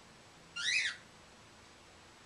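A pet bird gives one short whistled chirp, a single note that rises and then falls in pitch, a little after half a second in.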